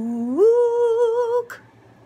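A woman humming with her mouth closed: a low note that slides up to a higher held note with a slight waver, stopping about one and a half seconds in, followed by a single click.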